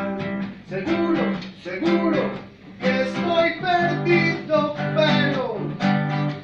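Nylon-string classical guitar strummed, accompanying a man singing a song live.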